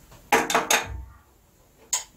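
Glass beakers set down on a hot plate: three quick clinks in the first second, then a single sharp click near the end.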